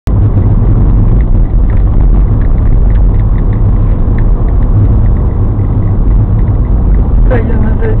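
Steady low rumble of a car driving along a city street, picked up inside the cabin by a dashcam microphone. A voice starts talking near the end.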